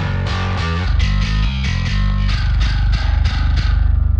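Bass guitar playing a fast, heavily picked metal riff with strong low end, played back through a stereo-widening bus of a low-cut EQ and a short convolution reverb.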